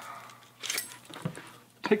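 A knife being drawn out of its sheath: a short scraping rustle a little under a second in, then a faint tick.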